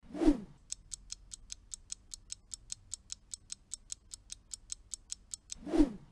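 Countdown-timer sound effect: a clock ticking evenly, about five ticks a second, for a guessing interval. A short whoosh falling in pitch leads into it, and a whoosh rising in pitch comes near the end.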